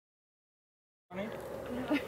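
Dead silence for about the first second, then sound cuts in: a low, steady buzz, with a voice starting near the end.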